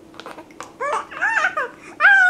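A baby cooing and babbling in a few short, high-pitched sounds that rise and fall, about a second in.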